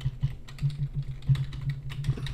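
Computer keyboard typing: a quick run of separate keystrokes, over a low steady hum.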